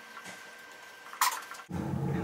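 Faint scratching of a marker writing on a whiteboard, with one short sharp scratch of a stroke a little over a second in. Near the end it cuts suddenly to a louder steady rushing noise.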